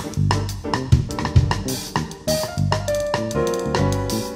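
Full drum kit played in a Latin jazz groove, with bass drum, snare and cymbal strokes, over a backing track of piano and bass; the pitched notes of the backing track come forward in the second half.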